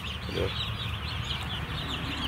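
A brooder full of two-day-old chicks peeping nonstop: many short, high chirps overlapping into a continuous chatter.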